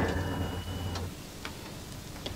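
Telephone line after the caller hangs up: a low hum with a faint thin tone that cuts off about a second in, then a couple of faint clicks.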